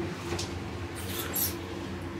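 Steady low hum of a lift cabin running, with a few fixed tones, and a couple of short high hissing rustles about a second in.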